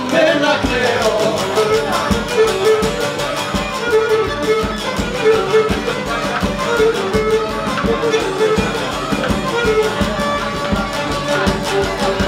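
Cretan lyra bowing a syrtos dance melody, accompanied by a strummed laouto and a large rope-tensioned drum beaten by hand in a steady, even rhythm.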